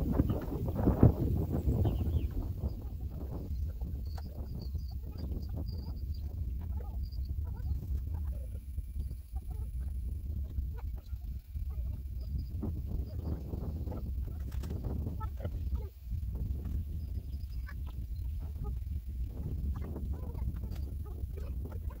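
Pepper plants rustling as peppers are picked off by hand, over a steady low rumble, with a louder stretch about a second in.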